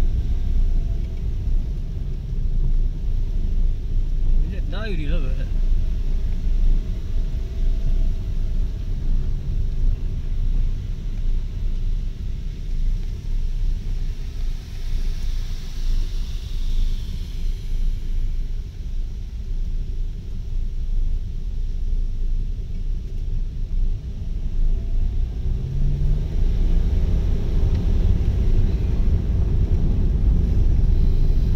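A car driving over a cobblestone road, heard from inside the cabin: a steady low rumble of tyres and engine that grows louder near the end.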